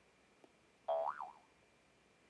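A short electronic 'boing' alert sound from the computer, its pitch sliding up and then wobbling back down over about half a second, about a second in. A faint click comes just before it.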